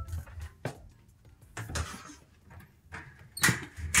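A front door being opened: a few sharp knocks and clicks, the strongest late on, over quiet background music.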